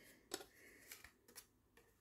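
Near silence broken by three or four faint, short clicks of handling noise.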